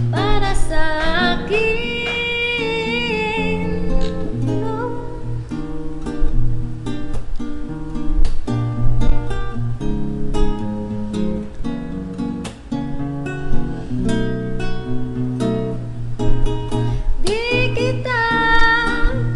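Acoustic guitar playing a bossa nova rhythm of plucked chords in an instrumental passage of the song. A woman's voice sings wordless gliding notes over it in the first few seconds.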